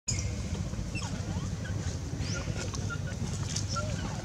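Outdoor background: a steady low rumble with faint, short bird-like chirps and whistles scattered over it.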